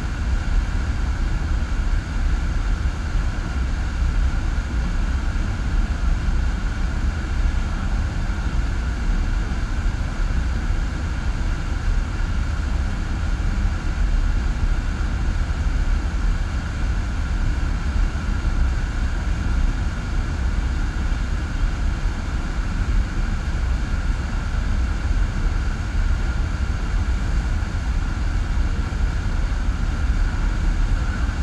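FlowRider sheet wave: a thin sheet of pumped water rushing steadily over the ride surface right at the camera, a loud, unbroken rush with a heavy low rumble.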